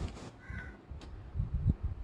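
A few dull low knocks about a second and a half in, from a ruler and pen being handled against paper on a desk, and a short crow caw about half a second in.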